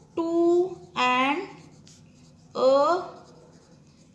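Pen writing on paper, a faint scratching, with a woman's voice saying three drawn-out words in between.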